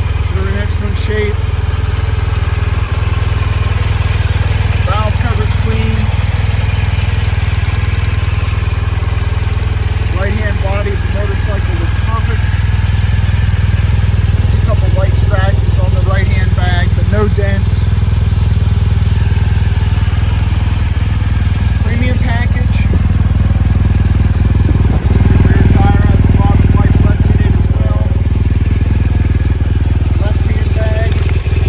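BMW R 1200 GS Adventure's boxer twin engine idling steadily.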